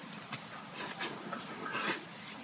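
Hands spreading moisturizer over the face: faint, soft rubbing of skin on skin.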